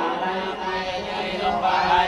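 Buddhist monks chanting together, several men's voices in a steady, continuous chant.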